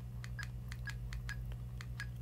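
Radtel handheld radio's keypad: a rapid, even run of short key clicks and beeps, about four a second, as the arrow key is pressed repeatedly to scroll through the menu.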